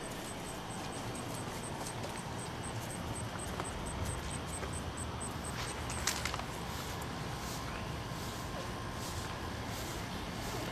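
Quiet outdoor ambience: a faint steady hiss with a high chirp repeating three or four times a second through the first half or so, and a small knock a little past the middle.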